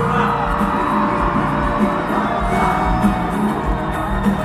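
Live band music playing at a concert, with the audience cheering and whooping over it.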